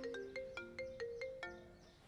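Mobile phone ringtone playing a quick marimba-like melody of short plucked notes, about four a second, pausing near the end.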